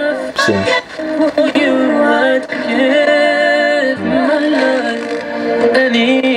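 A song with singing playing loudly from the built-in speaker of a Sony ICF-C1T AM/FM clock radio tuned to a broadcast station.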